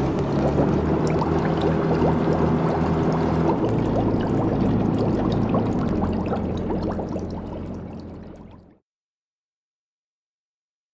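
Water bubbling and gurgling over a low, steady mechanical drone: sound effects for a submarine underwater with bubbles rising. It fades over the last few seconds and stops about nine seconds in.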